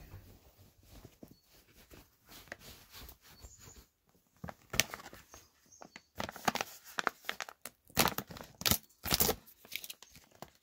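Plastic jerky bag crinkling in the hands and being torn open at its top corner. A few faint crinkles at first, then a run of sharp, crisp crackles in the second half.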